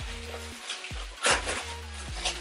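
Crinkling plastic wrapping on a Pampers diaper gift pack as it is handled and pulled at, with a louder crinkle a little past the middle.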